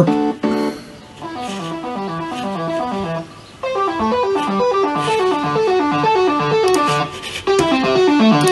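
Synthesizer lead arpeggio playing on its own: a quick run of notes stepping up and down in a repeating pattern, breaking off briefly about three and a half seconds in and then starting again.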